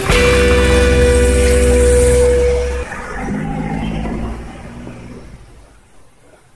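Background rock music ending: a held chord with heavy bass rings for about three seconds, then lower notes fade out.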